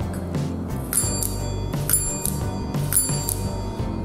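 A chrome desk bell is struck three times, about a second apart, by a gear-motor-driven robot arm, and each strike rings on. The three rings signal that the line-tracer robot has finished the whole track. Background music plays under the bell throughout.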